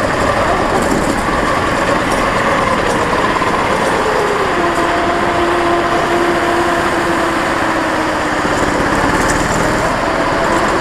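Go-kart engine running at racing speed, heard from an onboard camera with steady, loud rushing and vibration noise. The engine note drops about four seconds in, drifts lower, then rises again near the end.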